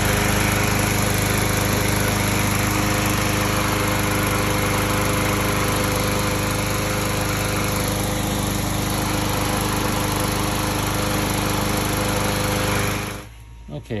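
Craftsman M220 lawn mower's 150cc Briggs & Stratton engine running steadily just after being pull-started, then stopping abruptly near the end.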